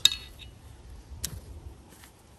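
A sharp clink with a short metallic ring as the plate carrier is set down beside its steel armor plates, followed by a fainter click about a second later.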